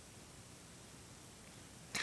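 Near silence: a faint steady hiss of room tone, with a brief soft sound right at the end.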